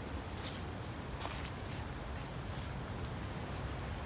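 Steady rain falling, with scattered faint ticks of drops.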